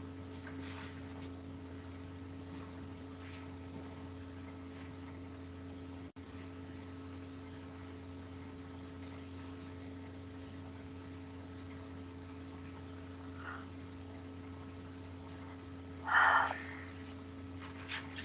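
Steady low electrical hum with a few fixed tones and faint hiss, picked up through an open call microphone. A short, louder sound of about half a second comes near the end.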